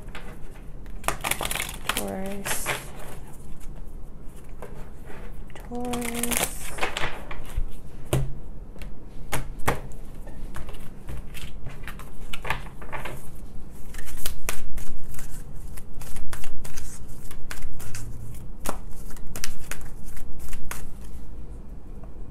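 A deck of oracle cards being shuffled by hand: a long, continuous run of quick papery flicks and riffles that grows busier and louder in the second half.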